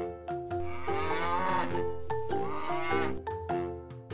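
A cow mooing: one long moo of about two seconds, starting about a second in, over light background music of short repeating notes.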